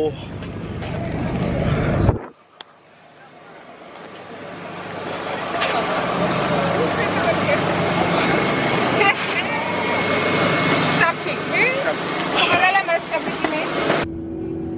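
Outdoor airport noise: a steady hum at first, then after a sudden drop about two seconds in, the steady hiss and rumble beside a parked jet airliner fades up, with scattered voices over it.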